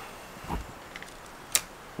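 Handling noise from fishing rods and reels: a soft low thump about half a second in, then a single sharp click about a second later, over faint background hiss.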